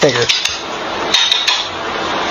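A few short, light clinks like a metal utensil against a dish, clustered about a second in, over a steady hiss.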